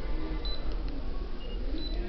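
A steady low electrical hum, with a few faint, brief high-pitched beeps about half a second in, midway and near the end.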